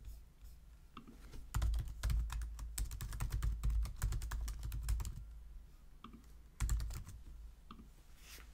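Typing on a computer keyboard while entering a username and password: a run of quick keystrokes from about a second and a half in until about five seconds, then a short cluster of keystrokes near seven seconds.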